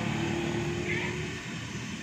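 Steady low background hum with a faint held low tone in it that stops about a second and a half in.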